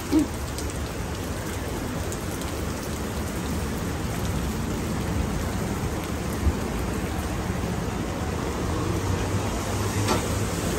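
Steady rain falling, an even hiss of drops on the ground.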